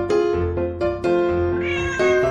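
Domestic cat meowing once near the end, a single drawn-out call, over background music.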